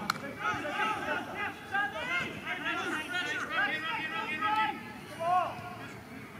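Several men's voices shouting and calling at once on a football pitch, overlapping in a loose babble that eases off near the end.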